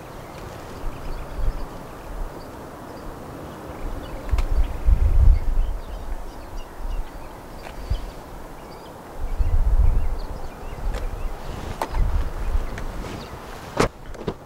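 Wind buffeting the microphone in irregular gusts, with a couple of sharp clicks near the end.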